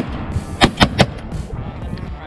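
Three shotgun shots fired at flying ducks, in quick succession about a fifth of a second apart, a little over half a second in.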